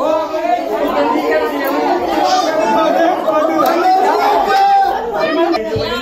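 Several people talking at once, their voices overlapping with no pause.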